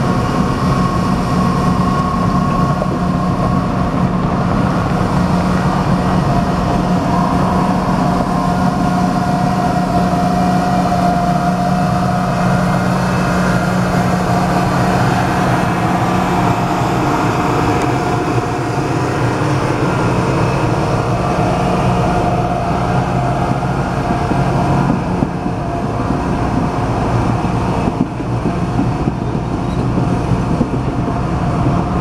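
Vintage streamlined passenger cars rolling slowly past on the rails, the wheels rumbling over the track with a steady high squeal.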